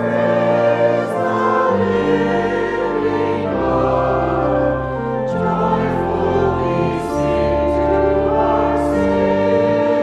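Church choir singing a hymn in long held chords, accompanied by an organ holding sustained bass notes.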